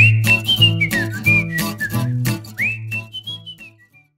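Short musical logo jingle: a whistle-like melody that swoops upward at the start and again near the end, over a steady bass line and crisp percussion, starting abruptly and tailing off just before the end.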